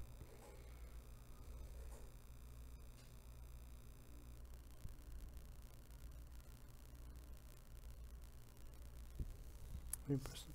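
Near silence: quiet room tone with a steady low hum. A faint high buzz stops about four seconds in, and there is a soft click near the end.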